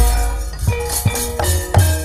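Javanese gamelan accompaniment for a wayang kulit show: low hand-drum strokes about twice a second over ringing bronze metallophone tones, with sharp metallic clacks.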